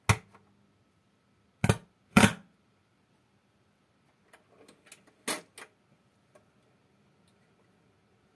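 Sharp mechanical clicks from working the switches and tonearm of a Radiotekhnika 301 stereo record player: three loud clicks in the first two and a half seconds, then a run of smaller clicks with one louder one a little past halfway. After the first click a faint steady hum runs underneath.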